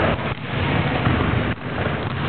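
Loud, steady rumbling noise on a handheld camera's microphone, dipping briefly twice.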